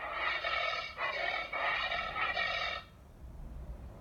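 Recorded giant anteater call from an animal-sounds app, heard through the device's speaker: about three seconds of breathy, hissing noise in three pulses, the last the longest, then it stops.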